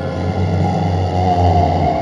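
Horror-film soundtrack effect: a deep rumbling swell with a rushing noise over it. It builds to a peak about one and a half seconds in, then eases off.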